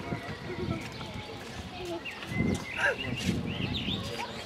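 Background chatter of people's voices, not clearly worded, with short high chirping calls scattered through it and a louder stretch of voices in the second half.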